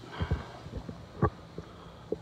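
A few dull low thumps near the start and one sharper knock a little over a second in, typical of a handheld camera being carried while walking.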